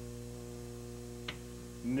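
Steady electrical mains hum in the recording's audio, with a single faint click a little over a second in; an announcer's voice begins right at the end.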